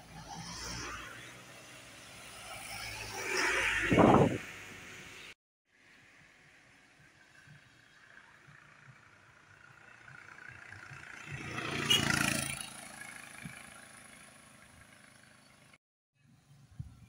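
Vehicles driving past one at a time on a wet road, each with engine and tyre noise that swells and fades. A van passes about four seconds in, the sound drops out briefly, and then a bus passes about twelve seconds in.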